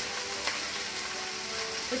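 Escarole sizzling in hot oil in a frying pan, stirred and tossed with a wooden spatula. The sizzle is a steady hiss.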